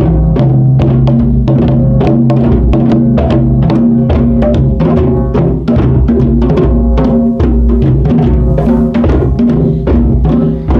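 A group of djembe hand drums played together in a steady layered rhythm, several strikes a second, with a sustained low drum ring underneath.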